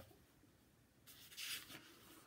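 Near silence: room tone, with one brief soft rustle a second in.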